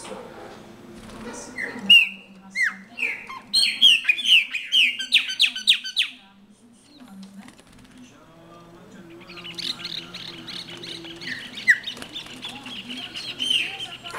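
Chopi blackbird (pássaro-preto) singing: loud, clear down-slurred whistles, then a quick run of notes from about two to six seconds in; after a pause, a long, fast series of notes from about nine seconds on.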